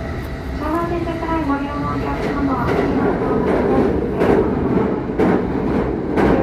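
Commuter train running, heard from inside the carriage, with a rising rush of noise and rail clatter in the second half as another train passes close alongside.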